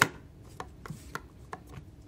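Plastic sport-stacking cups: a burst of cup clatter stops right at the start, then a few light, separate taps as the cups and hands settle onto the stacking mat.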